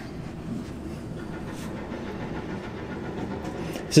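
A steady low rumble, as of machinery running, with no clear changes.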